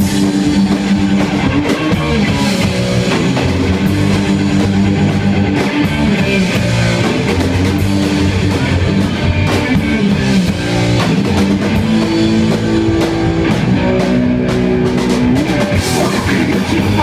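Live rock band playing an instrumental passage without vocals: electric guitar chords over a drum kit.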